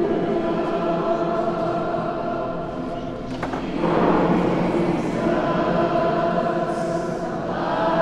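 A group of people singing together without accompaniment, holding long notes in a large stone church. There is a short lull about three seconds in, then the next phrase comes in louder.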